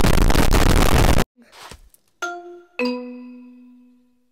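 A very loud blast of harsh noise, the distorted sound of the 'triggered' meme edit, that cuts off suddenly after about a second. Then a two-note chime: a short ding and a lower dong that rings on and fades away.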